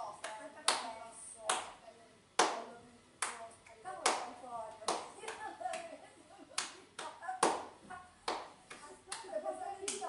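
Hands clapping: sharp single claps about once a second, slightly unevenly spaced.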